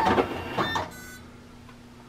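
Fastback 20 thermal tape binding machine running its motor for most of a second as a binding cycle finishes, then a faint steady hum.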